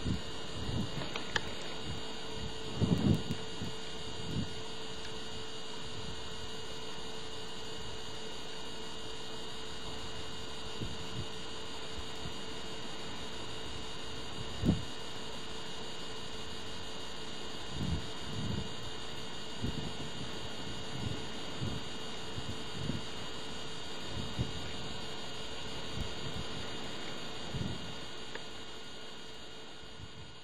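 Steady electrical hum and hiss of a camcorder's own recording noise, with scattered soft low bumps, most about three seconds in and in the second half, one sharp bump near the middle. The sound fades out near the end.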